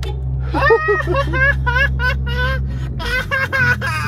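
A man laughing and exclaiming without clear words, over the steady low hum of the idling car, heard inside the cabin.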